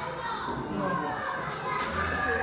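A crowd of young children playing and chattering together, many voices overlapping with none standing out.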